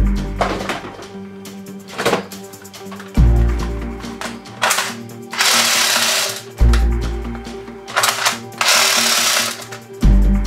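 Background music with a deep bass hit about every three and a half seconds, over held tones. Two harsh bursts of noise, each a second or two long, cut in around the middle and near the end.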